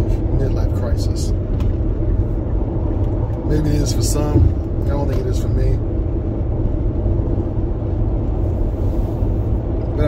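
Steady low rumble of a car driving, heard from inside the cabin, with a short burst of a man's voice about four seconds in.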